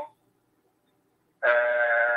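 Near silence for about a second and a half, then a voice holding one long, steady vowel that runs on into speech.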